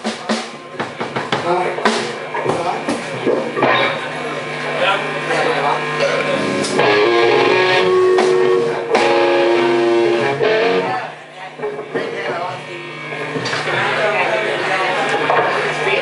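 Live band playing: electric guitar strumming over a drum kit, with a voice over the music. The playing eases briefly about eleven seconds in, then picks up again.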